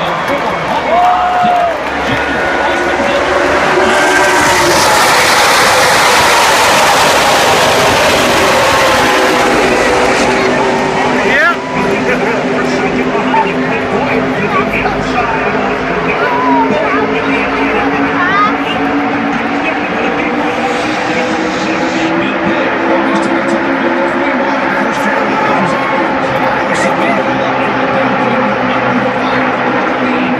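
A full field of NASCAR stock cars running at race speed, their V8 engines loudest from about four to ten seconds in as the pack goes past, then carrying on further off as many overlapping engine notes. Crowd cheering and shouting runs underneath.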